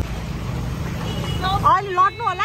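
Low, steady rumble of motor scooters riding along a waterlogged street. A voice comes in about one and a half seconds in.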